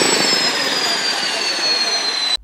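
Beechcraft King Air twin-turboprop's turbine engines running on the ground: a rushing noise with a high whine that falls slowly in pitch.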